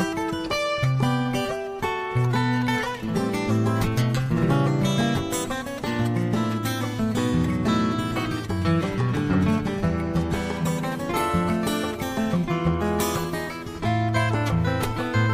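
Background music led by a plucked acoustic guitar, playing a quick run of notes over a lower bass line.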